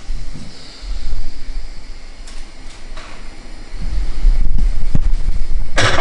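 Deep rumble of handling noise on the microphone, with a few light clicks. Near the end comes a short burst of aluminium foil crinkling.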